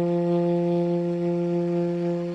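A saxophone holds one long, steady low note, unaccompanied, in an improvised blues.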